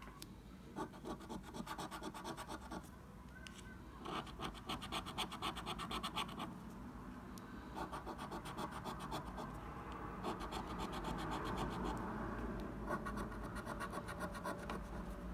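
A coin scratching the coating off a scratch card in rapid back-and-forth strokes. The strokes come in four bursts separated by brief pauses.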